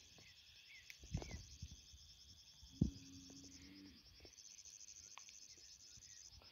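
Quiet outdoor ambience: a faint, steady, high-pitched insect chorus, with a few soft thumps of footsteps and camera handling and a brief low hum near the middle.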